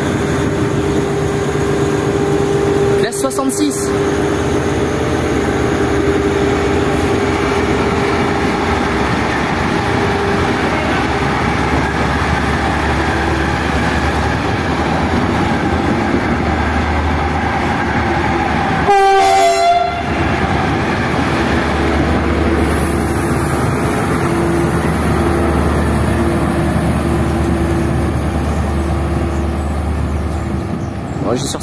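Two SNCF BB 60000 diesel freight locomotives running as the train rolls slowly past close by, a steady loud engine note with a deep rumble that swells about halfway through and again as the second locomotive comes by. There is a brief louder burst about two-thirds of the way in.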